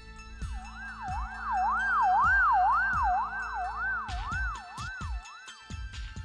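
An emergency-vehicle siren wailing up and down about twice a second. It swells to a peak and fades out a little before the end, over background music.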